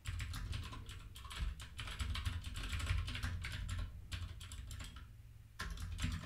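Typing on a computer keyboard: a quick, uneven run of keystrokes that slackens briefly before picking up again near the end.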